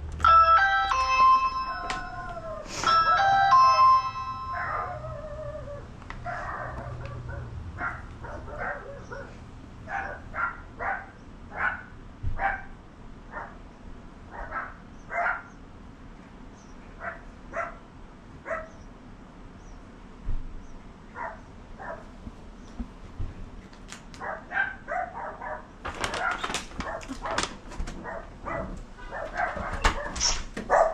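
Video doorbell chime sounding in two phrases. Then dogs barking behind the closed front door, roughly one or two barks a second at first and thinning out, with a louder burst of barking near the end.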